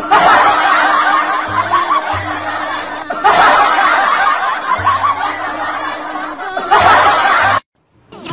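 A laughter sound effect, several people snickering and laughing, laid over background music. The laughter swells fresh about three seconds in and again near the end, then cuts off suddenly.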